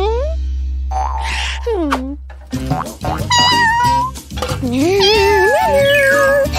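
Cartoon soundtrack: two short swooping cat-like sound effects, one at the start and one about two seconds in, over a low steady music drone. From about two and a half seconds a bouncy children's tune takes over, with a character's wordless vocal sounds near the end.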